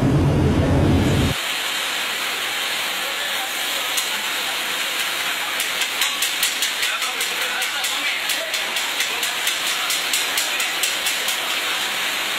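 Boondi batter sizzling as it drips through a perforated ladle into hot oil: a steady frying hiss. From about halfway, a run of light rhythmic clicks, about three a second, rides on the hiss.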